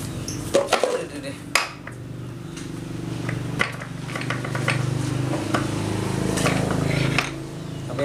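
A hard plastic chicken-feeder tube knocking and clattering as it is handled, then a small knife cutting and scraping at the thick plastic with scattered clicks. A steady low droning hum runs under the cutting from about two and a half seconds in until near the end.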